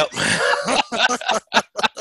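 Men laughing: a loud burst of laughter, then a run of short, quick laughing pulses about four or five a second.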